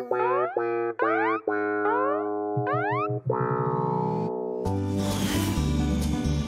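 Cartoon soundtrack music: a string of quick rising boing glides, about half a second apart, over held notes, then a held chord. About five seconds in, a fuller tune starts with a cymbal-like crash and a regular beat.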